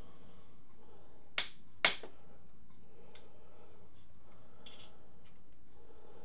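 Two sharp clicks, the second louder, then a couple of faint ticks, as hand tools undo the 5 mm Allen bolts on top of a Suzuki Bandit 1200 engine's crankcases.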